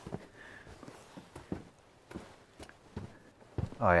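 Scattered light footsteps and small knocks, irregular and a few per second.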